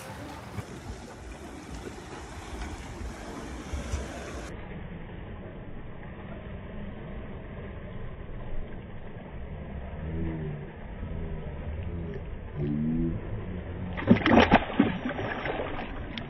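Water splashing as a spotted bass is let go back into the lake, a loud flurry of splashes about two seconds before the end, over a steady low rumble.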